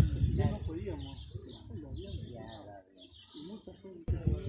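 Indistinct voices talking in the background, fading away over the first three seconds, with birds chirping in short high calls throughout.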